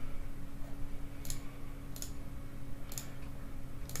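Four computer mouse clicks, sharp and about a second apart, over a steady low hum.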